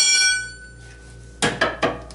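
A steel pry bar clangs against metal and rings out for about a second and a half. Three quick, sharp knocks follow near the end.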